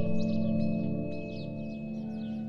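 Background music: a held, steady drone with many quick, high, falling chirps like birdsong over it, easing slightly in level.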